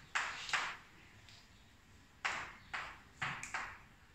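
Chalk writing on a blackboard: short, sharp scraping strokes, two near the start and four more in the second half after a quiet pause of about a second and a half.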